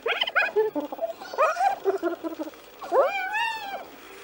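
Spotted hyenas giggling: a quick run of short, rising, high notes, more in the middle, then one longer call that rises and falls near the end. The laughing is a sign of stress, aggression and competition over the food.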